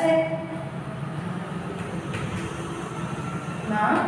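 A steady low rumble of background noise, with no clear start or stop.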